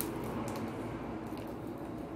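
Faint mouth sounds of chewing a chocolate-coated curd snack bar, with a few soft clicks over steady low room noise.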